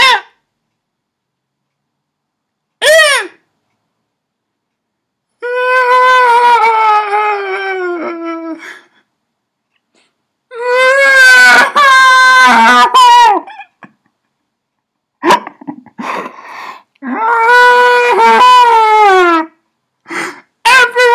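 A man's exaggerated, high-pitched mock wailing: a short squeal, then three long sobbing cries that each slide down in pitch, separated by complete silences.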